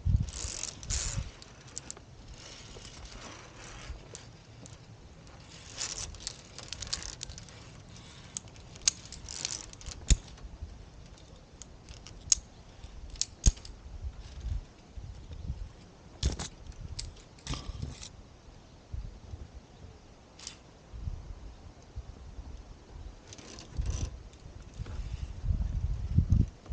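Via ferrata climbing gear being handled: irregular metallic clicks, jangles and scrapes of carabiners and lanyards against the steel safety cable and rock, with low rumbling on the microphone between them.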